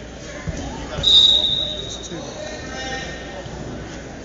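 Referee's whistle blown once, a single steady high tone about a second long, stopping the wrestling action. A couple of dull thuds from bodies on the mat come just before it.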